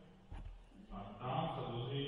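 A man's voice talking in a low, even monotone in a large echoing hall. It starts about a second in, after a short lull.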